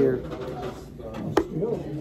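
A man says one word at the start, then there is an indistinct murmur of voices in a restaurant dining room. A single sharp click or tap comes about a second and a half in.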